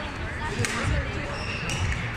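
Badminton racket strikes on a shuttlecock: two sharp hits about a second apart, with low thuds of footwork on the court, in a hall full of background chatter.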